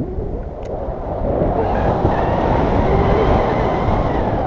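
Wind rushing and buffeting over an action camera's microphone as a tandem paraglider flies through the air: a loud, steady deep rush.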